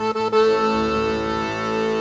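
Chacarera music led by an accordion: a few quick notes, then steady held chords.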